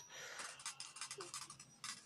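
Faint handling noise: light scratching and rubbing with a few small clicks, as a screwdriver and the wires of a small hobby circuit are handled.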